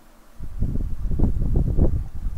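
Low rumbling buffeting of air against the microphone, starting about half a second in and lasting to the end. It is loud next to the quiet room tone before it.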